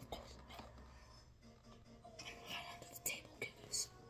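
A child whispering softly in short breathy bursts, mostly in the second half.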